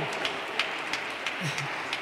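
Light, scattered applause from a seated audience in a large hall, over steady room noise, with a brief low voice about one and a half seconds in.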